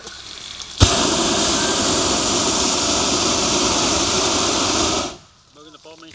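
Hot-air balloon's twin propane burner firing one steady blast of about four seconds during hot inflation, starting suddenly about a second in and cutting off sharply.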